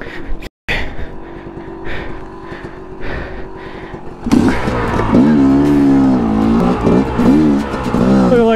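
Two-stroke engine of a 2005 Yamaha YZ250 dirt bike running at low revs, then from about four seconds in revving up and down with the throttle as it climbs over rocks. The sound drops out briefly about half a second in.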